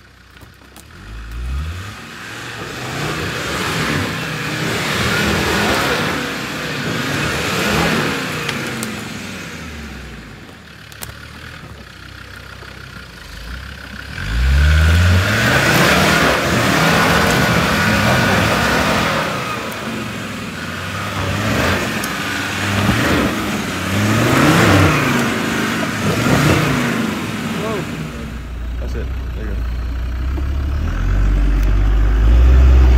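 Land Rover turbo-diesel 4x4 engine revving hard in repeated bursts as it claws up a steep muddy slope, the revs climbing and dropping again and again. It is at its loudest from about halfway through.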